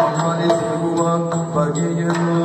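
Yakshagana himmela music: the bhagavata's chant-like singing over a steady drone, with regular sharp drum strokes.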